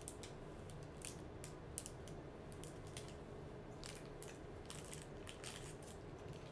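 Faint crinkling and crackling of gift wrapping and packaging being handled and opened, a string of short, irregular crisp ticks.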